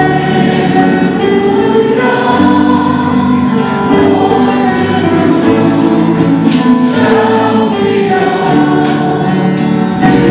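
Congregation singing a slow sung acclamation in long held chords, loud and continuous, as the Gospel is about to be read.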